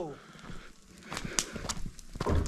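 Open cooking fire crackling, with a few sharp pops in the second half.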